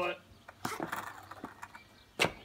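Faint, scattered clicks and light knocks from a skateboard on tarmac as the rider rolls along and steps off near the end.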